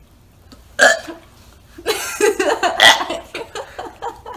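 A man gagging with burp-like heaves, one sharp heave about a second in and then a run of them for about a second and a half, as he reacts to a jelly bean that may be the barf flavour.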